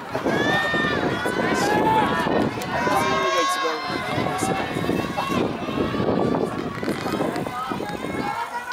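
Several voices shouting encouragement to runners in a track race, drawn-out calls overlapping one another over a background of crowd noise.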